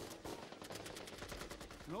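Rapid automatic gunfire, a fast run of shots at about a dozen a second starting about half a second in.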